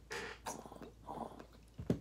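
A soft hiss of breath drawn through an electric dab rig's glass mouthpiece, fading out after about a second, with a short breathy thump near the end.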